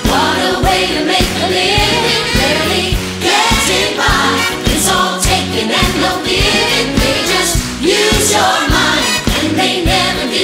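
Musical-theatre cast singing in chorus over a live pit band, with a steady driving beat.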